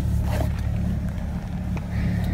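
Chevy pickup truck running at low speed, heard inside the cab as a steady low drone, with a faint noise that the occupants put down to the linkage or a tire rubbing.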